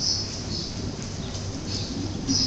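Small birds chirping: short, high calls repeated irregularly, about every half second to a second, over a low steady hum.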